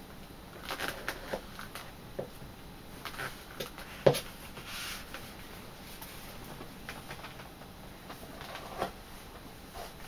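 Small knife blade shaving thin slivers off the edge of a piece of leather: quiet, irregular short scrapes and clicks, the loudest about four seconds in.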